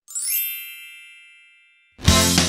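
A bright chime sound effect: a quick rising shimmer of bell-like tones that rings and fades away over nearly two seconds.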